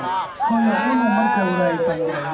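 A man's voice through a microphone and PA in a long, drawn-out sung call, starting about half a second in and holding its note while the pitch wavers slowly.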